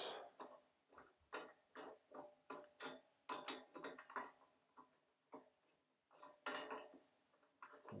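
Brass spud and radiator valve union knocking and clinking against each other as they are lined up and the union nut is started on its threads: a string of light, irregular metallic clicks.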